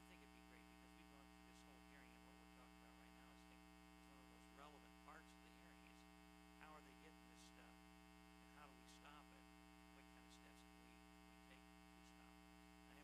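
Near silence: a steady electrical mains hum, with faint distant voices now and then.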